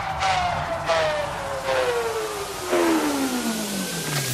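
Neurofunk drum and bass in a transition: a synth tone sliding steadily down in pitch, with a faint rising tone coming in near the end and the heavy beat thinned out.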